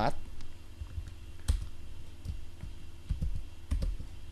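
Computer keyboard typing: a few irregular key clicks over a steady low hum.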